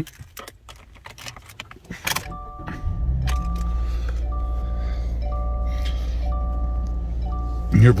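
Keys jangle and click, then about two seconds in the 2019 Subaru Crosstrek's 2.0-litre four-cylinder starts and settles into a steady idle. A two-tone dashboard warning chime repeats about once a second over the idle, six times.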